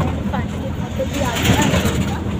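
Steady low rumble of a car on the move, heard from inside the cabin, with faint voices over it.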